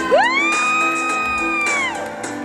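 A single loud, high whoop, rising sharply then held for about a second and a half before dropping away, over background music.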